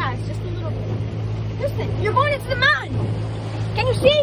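Motorboat engine running at a steady low hum as the boat moves across the water, with short high children's calls over it.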